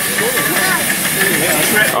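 Miniature live-steam locomotive modelled on LNER 458 steadily hissing as it vents steam, with people talking nearby.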